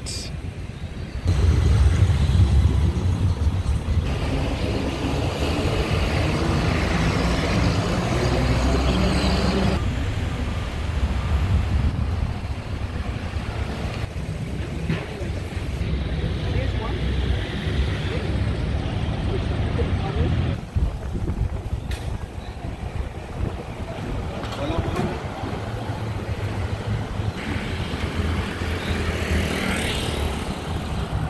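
Street traffic: cars and taxis passing on a town road, with a low rumble starting about a second in and running on, and indistinct voices.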